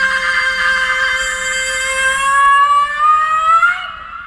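A rock singer's long sustained high wail: one held note, sung alone with the band stopped, that glides upward near the end and then breaks off.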